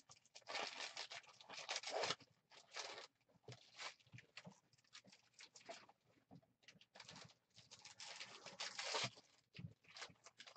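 Trading-card pack foil wrappers crinkling and tearing, with cards being handled and laid down, in faint irregular rustles that come in bunches near the start and again near the end.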